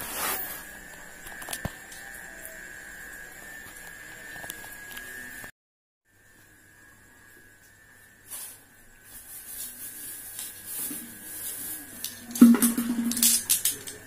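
A phone camera being handled and set down with a short rustle, then a steady faint electrical hum. After a cut come scattered handling knocks and scrapes, loudest in a brief clatter near the end.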